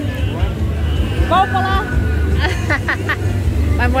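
Waves breaking on a sandy beach at night, heard as a steady low rumble, with people's voices talking briefly in the middle.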